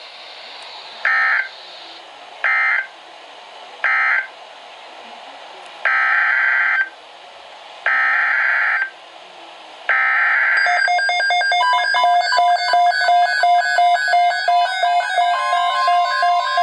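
NOAA Weather Radio SAME digital data bursts: three short end-of-message bursts, then three longer header bursts of the next alert about two seconds apart. After that, several weather alert radios start sounding their electronic alarm beeps together, a busy mix of stepping tones.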